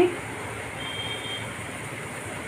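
Sugar syrup boiling hard in an aluminium kadai on a gas burner: a steady bubbling hiss. A faint short high tone sounds about a second in.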